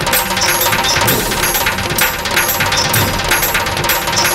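Dramatic TV-serial background score with a fast, steady beat of sharp, clicky percussion, about three strokes a second.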